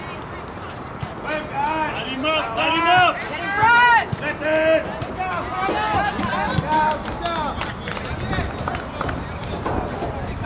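People shouting during a soccer game: a quick run of calls, loudest about three to four seconds in, then fewer and softer shouts.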